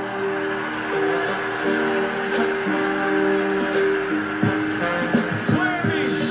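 Music from a live band on stage: steady held chords, with a few low thuds about four and a half to five and a half seconds in.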